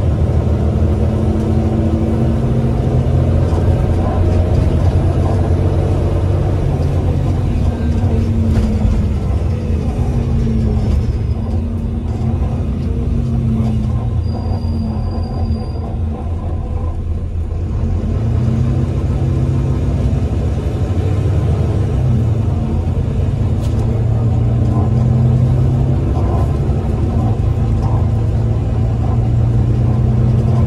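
Volvo B9TL double-decker bus's diesel engine and Voith automatic gearbox heard from inside the lower deck while driving, a loud rumble whose pitch climbs and drops as the bus accelerates and shifts. Around halfway the engine eases off and then pulls away again with rising revs, and a brief high whistle sounds just before that.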